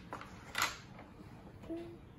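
Two short scraping rubs about half a second apart, from a cat's paw and a toddler's hand brushing a wooden tabletop and a small toy, followed near the end by a brief faint tone.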